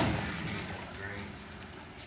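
A single sharp knock right at the start, dying away over about half a second, then quiet room tone with a faint voice in the background.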